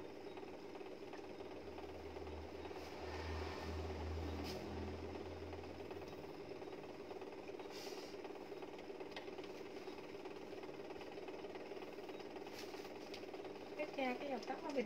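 Steady low mechanical hum, with a deeper rumble that swells and fades within the first six seconds and a few faint clicks.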